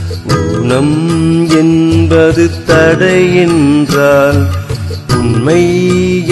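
Tamil song with a melodic vocal line sung in phrases of about a second, over instrumental backing with a steady beat.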